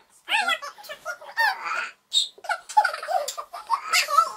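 Young children's high-pitched voices, chattering and squealing excitedly in short bursts without clear words, with a brief shrill squeal about halfway through.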